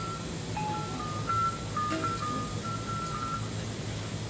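Balinese gamelan playing softly: a slow, sparse melody of a few held high notes.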